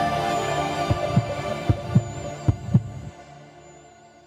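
Outro jingle of sustained synth-like tones with a heartbeat sound effect: three paired thumps, evenly spaced, before the music fades out near the end.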